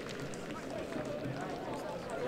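Indistinct chatter of many voices at a football ground, players and spectators talking and calling at once, with no single voice standing out.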